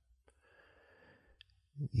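A near-silent pause in a man's speech: a faint breath into a close microphone and one small click, then he starts speaking again just before the end.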